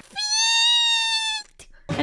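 A woman's single long, high-pitched squeal of disgust, held almost level for over a second and dropping slightly at the end before cutting off.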